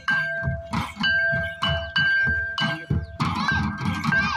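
Folk barrel drums beating a fast, driving dance rhythm, with sharp higher strokes and a high held tone sounding above them.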